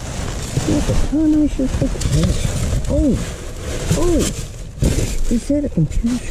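Plastic packaging, bubble wrap and foam sheeting rustling and crinkling as gloved hands dig through a bin, with an indistinct voice murmuring in short phrases.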